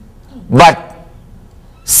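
Speech only: a single short spoken word in a pause, with quiet room tone around it.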